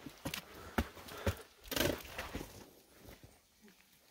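Footsteps and trekking-pole tips knocking and scuffing on rock steps as a hiker climbs a steep trail, a handful of irregular clicks that trail off near the end.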